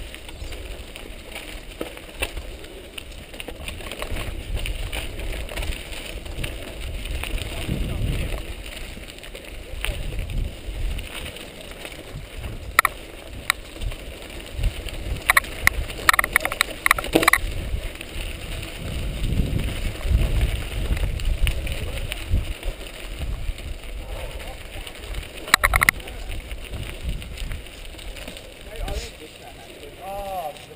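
Mountain bike riding fast down a dirt singletrack, heard from a helmet-mounted camera: wind buffeting the microphone and tyres on dirt make a low rumble that swells and fades, with sharp rattles and clatters from the bike jolting over bumps, several close together in the middle and another near the end.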